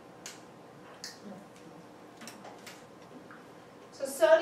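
Faint footsteps on a hard classroom floor: a few soft, irregularly spaced steps and scuffs over quiet room hiss.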